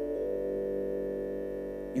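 A soft keyboard pad chord from a Nord Stage 2, several notes held steady as a background bed.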